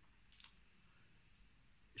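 Near silence: room tone, with one faint short click about half a second in.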